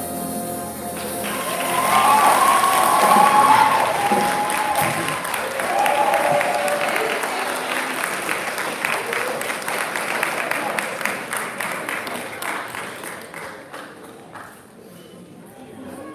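Audience applauding and cheering, with whoops from a few voices a few seconds in; the clapping dies down near the end.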